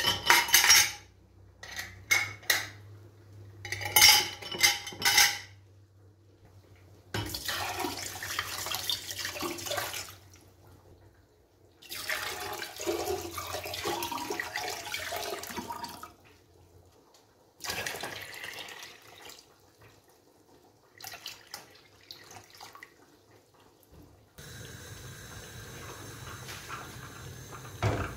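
Glass jars clinking against each other inside a metal stockpot as their lids are set in among them, then cold water poured from a plastic jug over the jars in three pours. Near the end a steady hiss begins, and a single knock comes at the very end.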